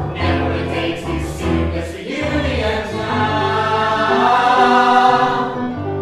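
Stage musical cast singing together as an ensemble in harmony, with sustained chords that swell to a loud held note about four to five seconds in, then ease off.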